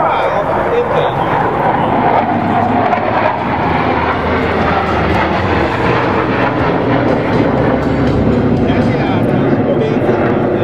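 Jet engines of a formation of F-16 fighters flying aerobatics with smoke on: a loud, steady roar that holds without a break.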